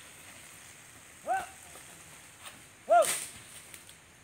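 Two short, clipped shouts from the buffalo's handler urging it on, one a little over a second in and a louder one near three seconds. The louder shout comes together with a sharp crack.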